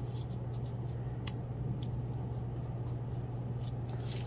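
Construction paper being folded and creased back by hand: a few faint crinkles and taps over a steady low hum.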